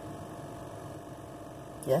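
Steady low hum inside a car's cabin, with a faint steady tone over it. A child says a short word right at the end.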